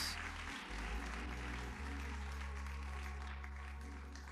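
Congregation applauding over instrumental music with long-held low bass notes, which change twice in the first two seconds.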